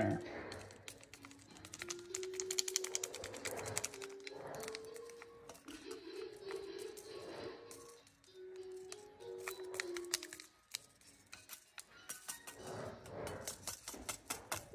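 A quiet melody of held notes stepping up and down, over rapid light clicking and crinkling from a foil seasoning packet being worked through wet noodles in a metal pot.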